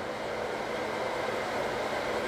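Steady background hiss of room noise with a faint low hum, in a pause between spoken sentences.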